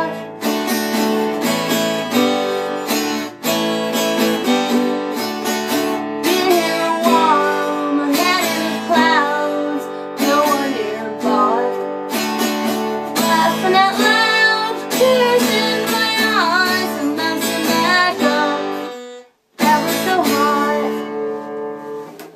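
Acoustic guitar strummed through a closing instrumental passage. It stops briefly near the end, then a final chord rings and fades away.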